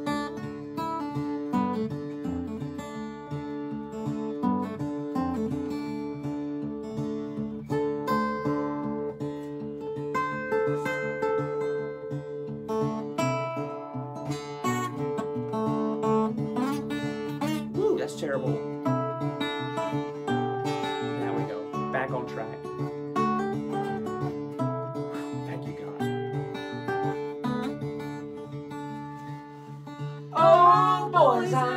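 Acoustic guitar playing a song's instrumental intro, chords strummed and picked with notes left ringing.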